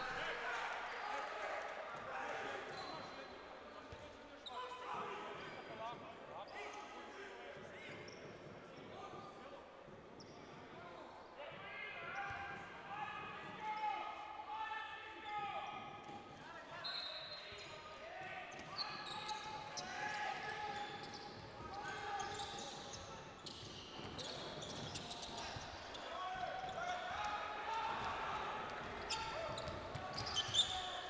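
Basketball game sound in a large sports hall: voices throughout, with a basketball bouncing on the hardwood court. A short high referee's whistle sounds about halfway through, and the dribbling is plainest near the end.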